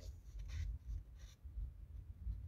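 Faint rustling of paper sheets being handled, in a couple of short bursts over a low steady rumble.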